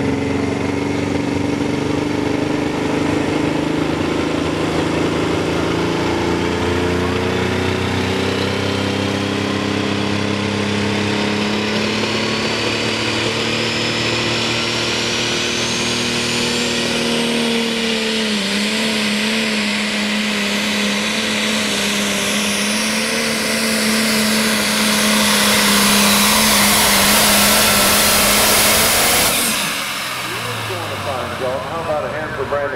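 Super stock pulling tractor's turbocharged diesel engine running at the starting line at steady revs, with a thin whine that climbs slowly in pitch. It grows louder in the last few seconds, then cuts off suddenly at the end.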